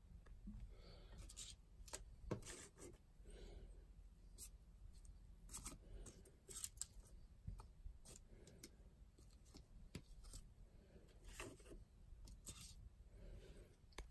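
Faint handling noises: scattered light clicks and brief rustles as small foam chip holders are picked up and set down on a tabletop.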